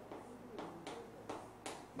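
Chalk tapping and scraping against a chalkboard in short strokes, about five in two seconds, as small marks are drawn.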